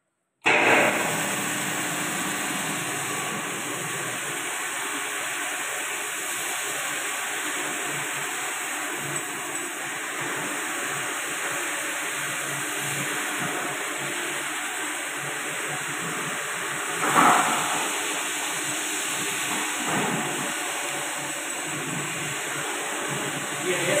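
Electric marble floor grinding machine running steadily, its grinding head working over a wet marble floor, a loud even noise that starts abruptly just after the start. A brief louder sound rises over it about 17 seconds in.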